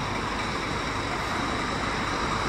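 Scania K410iB bus's rear-mounted six-cylinder diesel engine idling steadily.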